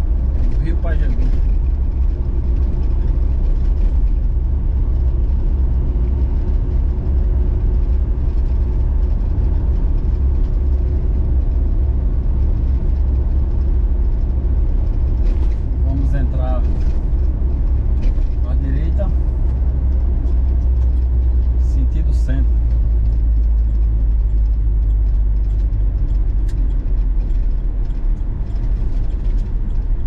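Steady low rumble of a Troller 4x4 under way at road speed, engine and tyre noise heard from inside the cabin.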